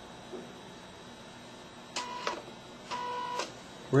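Small portable inkjet printer starting a print job: two short motor whines, one about two seconds in and a slightly longer one about three seconds in.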